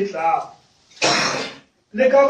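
A man preaching over a microphone says a few words, then after a short pause makes a brief harsh throat noise about a second in.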